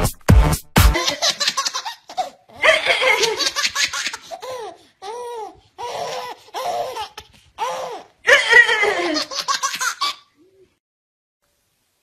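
A short stretch of music with a steady beat, then a toddler laughing in repeated bursts of giggles for about nine seconds.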